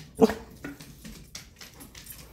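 German shepherd giving a short whine about a quarter second in and a weaker one soon after: a dog eager to be fed. A few light clicks follow.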